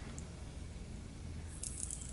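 Faint crackling from a defensive Asian tarantula (a 'himalayana') rearing in a threat posture: a defensive noise it makes when disturbed. A tiny tick comes about a quarter second in, and a few light crackles come near the end, over a low steady hum.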